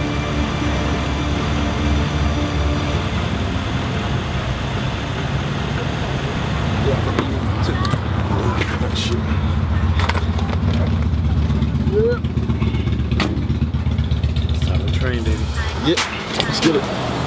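Car engine idling with a steady low rumble. Music fades out over the first few seconds, and brief indistinct voices and clicks come in the second half.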